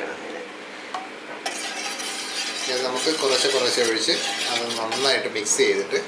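Metal spoon stirring milk in a stainless-steel pan, the spoon scraping against the pan in a continuous rasp.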